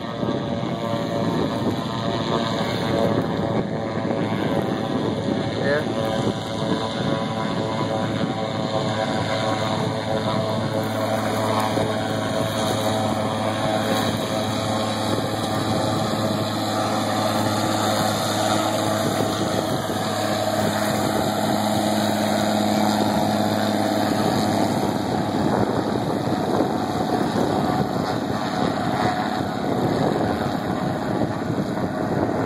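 Single-engine floatplane on its takeoff run, its engine and propeller droning steadily as it skims across the water toward the listener. A low hum grows somewhat louder through the middle stretch as the plane nears.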